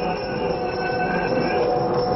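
A steady reed drone of several notes held at once from a shruti box accompanying Yakshagana theatre.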